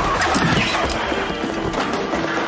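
Background music over a fistfight: scattered thuds and scuffling from the brawl, with a short laugh about a second in.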